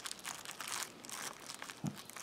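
Faint crinkling of a plastic wrapper around a skein of yarn as hands press and shift on it.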